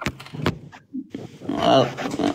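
A man's voice over a live-stream call, speaking from about halfway through. Near the start come two sharp clicks about half a second apart.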